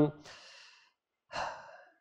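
A man breathing between phrases: a breath out trailing off the end of an 'um', then a second, shorter breath about a second and a half in.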